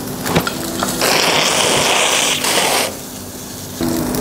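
Cubes of A5 Wagyu beef sizzling in a hot black skillet: a loud hiss that starts suddenly about a second in and cuts off after about two seconds, preceded by a few sharp clicks.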